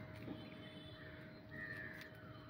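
A bird calling, faint, with one call about one and a half seconds in.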